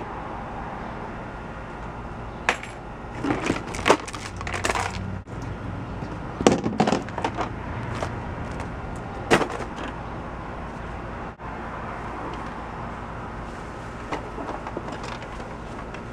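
Things being handled in a plastic storage tote: irregular knocks, clatters and rustles of plastic toys and packaging, busiest in the first half, over a steady low hum.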